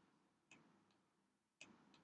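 Near silence with two faint clicks, about half a second in and near the end: a computer mouse button pressed while digits are drawn on screen.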